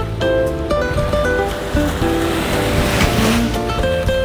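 Background music of plucked guitar-like notes, with a swell of rushing noise that builds to about three seconds in and then fades.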